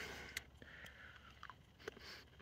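Faint chewing of a large piece of kangaroo jerky, with a few soft mouth clicks.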